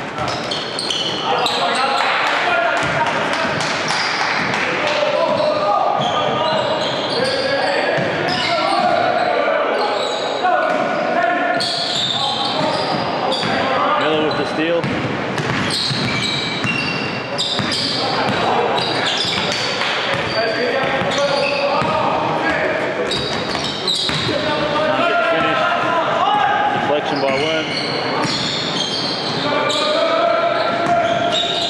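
Live basketball game sounds in a gym: a ball bouncing on the hardwood court, repeated sharp impacts from play, and players' and spectators' voices calling out, all echoing in the hall.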